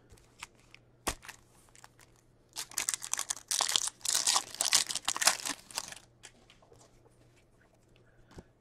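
Foil wrapper of an Upper Deck hockey card pack being torn open and crinkled: a crackling run of about three and a half seconds, after a single sharp click about a second in.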